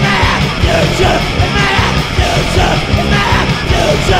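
Loud punk/metal song: a full band with driving drums and distorted instruments under shouted vocals.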